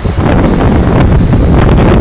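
Wind buffeting the microphone of a camera held at the window of a moving car: a loud, steady rumble that comes up suddenly just after the start.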